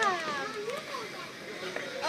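People's voices, a child's among them: a falling exclamation right at the start, then quieter talk.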